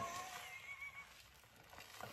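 Fingers scrubbing a thick shampoo lather into hair, a faint wet squishing and crackling of foam, with a thin, wavering squeak in the first second.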